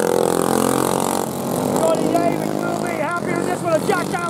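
Racing kart engine passing close by, loudest in the first second and dropping in pitch as it goes past, with a commentator's voice over it and other karts further off.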